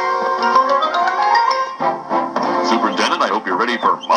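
A short music cue, a chord with a run of rising notes, played from a cassette tape through the small built-in speaker of a Wintech SCT-R225 radio cassette recorder. Just under two seconds in it stops and a man's voice from the same tape follows.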